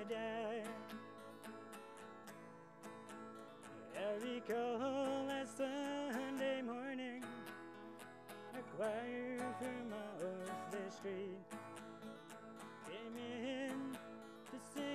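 Two acoustic guitars playing a slow country tune together, strummed chords with picked notes, and a voice holding long wavering notes without clear words.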